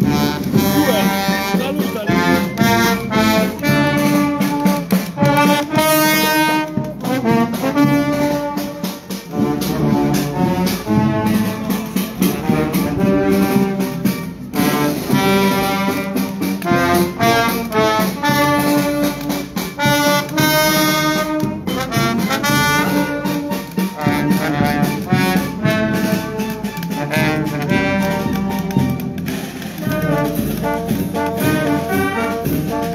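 Italian town wind band playing a march on the move, brass and clarinets over a steady beat.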